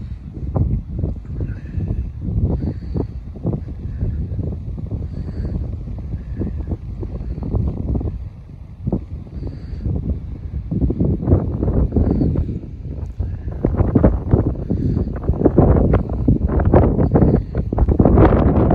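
Wind buffeting the microphone: a loud, ragged low rumble that grows stronger in the second half.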